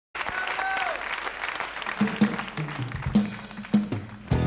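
Studio audience applauding, with a brief whistle that falls away about half a second in. The clapping thins out during the second half while a few low plucked notes sound from the stage.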